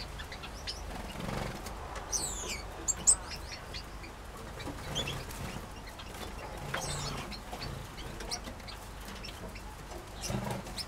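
Small aviary finches and canaries chirping, with scattered short high calls throughout and a quick falling run of notes about two seconds in. Two short sharp sounds come about three seconds in, and there are soft low sounds underneath.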